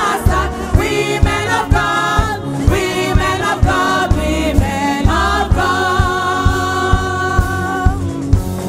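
Upbeat gospel praise song: several voices singing together over a steady drum beat, with one long held note in the last couple of seconds.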